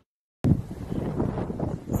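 Wind buffeting a handheld microphone, cutting in suddenly about half a second in after dead silence, as a loud, uneven low rumble.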